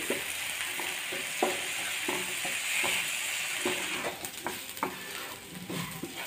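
Chopped onions, tomatoes and green chillies sizzling in oil in a nonstick frying pan while a wooden spatula stirs them, with irregular scrapes and taps against the pan. They are being fried until brown. The sizzle softens over the last couple of seconds.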